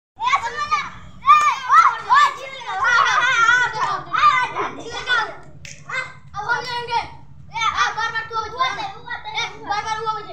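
Several boys shouting and calling out excitedly in high voices during a rough-and-tumble outdoor game, the loudest stretch a few seconds in, over a faint steady low hum.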